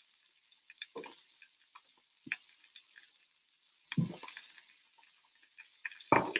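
Beef patty frying quietly on an electric griddle, with faint scattered crackles, and three soft knocks of a plate being handled about one, two and a half and four seconds in.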